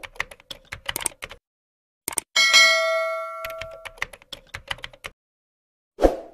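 Subscribe-button animation sound effects: a run of quick clicks, then a bright bell ding about two and a half seconds in that rings away over about a second and a half, with more clicks after it.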